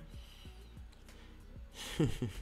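A quiet pause over a faint background music bed, ending in a short audible intake of breath through the microphone just before the man speaks again.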